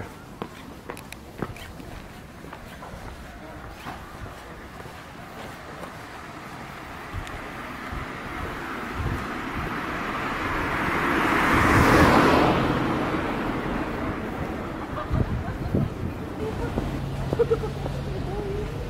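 A car driving past on the street, its tyre and engine noise growing louder to a peak about two-thirds of the way in, then fading away.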